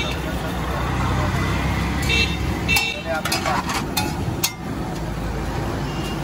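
Metal spatula clinking and scraping on a large flat iron griddle (tawa) as kulchas cook, a few sharp knocks spread through, over a low hum of street traffic.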